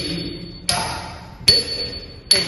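Nattuvangam hand cymbals struck in a steady beat keeping time for a Bharatanatyam adavu, one stroke about every 0.8 seconds. Each stroke rings on with a high tone that fades before the next; two strokes fall here.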